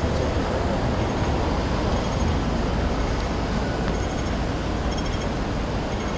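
Steady city street traffic noise, a low rumble of vehicles passing, with a few faint, short high-pitched beeps now and then.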